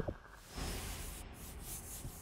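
Sound effect accompanying an animated logo: a short click, then a soft airy swish from about half a second in that thins out near the end.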